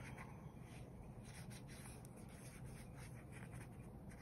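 Faint rubbing of a water brush's bristles over paper, spreading wet water-soluble graphite across the page.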